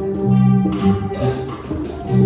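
Free-jazz group improvisation on saxophones, bass and drums, with long held low notes under higher horn lines. A cymbal wash comes in about a second in.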